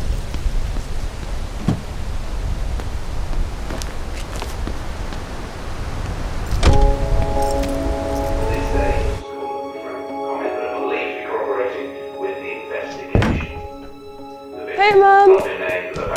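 Low, even outdoor ambience broken by a single heavy thunk about seven seconds in. Then, after an abrupt change, a held musical drone with another thunk, and a voice near the end.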